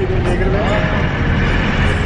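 Steady engine and road noise heard inside a local bus, with passengers' voices faintly in the background.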